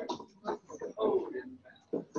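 Indistinct talk among a few people standing close together, low voices coming and going in short phrases.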